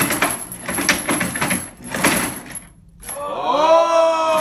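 Hand-pushed wooden shake table rattling and knocking back and forth on its rollers under a weighted model tower, at about two to three strokes a second. The rattling stops about three seconds in, and a long drawn-out cry of voices rises.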